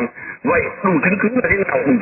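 Only speech: a man speaking Vietnamese, with a narrow, radio-like sound.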